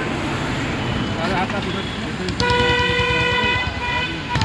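A single steady, high tone sounds for about a second and a half, starting a little past the middle and stopping shortly before the end, over people talking and street noise.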